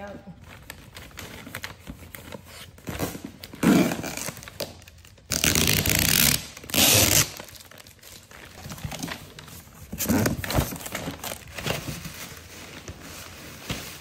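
Gift wrapping paper crinkling and packing tape being cut and ripped off a cardboard box, with several loud tearing rasps in the middle, the longest about a second.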